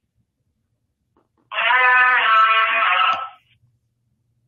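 A single held, pitched sound of about two seconds comes in thin over a caller's phone line, starting a second and a half in. It is no spoken answer, and the host is not sure what it was.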